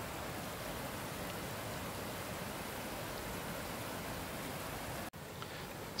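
Steady rushing of a small waterfall pouring over rocks, with a momentary break a little after five seconds in.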